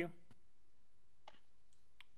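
The end of a spoken "thank you", then a quiet pause broken by two faint clicks: one just after the word, one a little over a second in.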